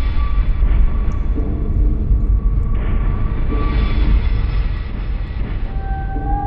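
Loud, steady low rumble with faint held tones above it: a dark sound-design drone from a horror trailer soundtrack.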